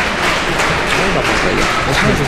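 Audience applauding in a concert hall, dense clapping with voices talking close by.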